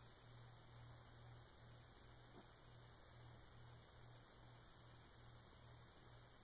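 Near silence: a faint, steady low hum over a soft hiss.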